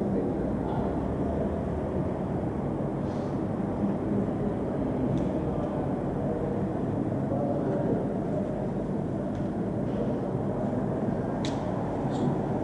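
Steady low room rumble in a lecture room, with a few faint clicks now and then.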